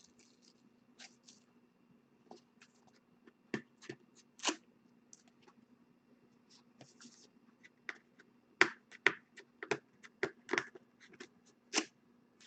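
Hands opening trading-card packaging and handling the cards: scattered sharp clicks, snaps and rustles of cardboard and card stock. A few louder snaps come about four seconds in, and the handling gets busier and sharper in the last few seconds.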